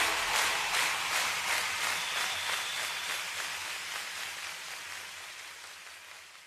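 The slideshow's background track fading out: a rain-like hiss with a quick, regular tapping, dying away steadily.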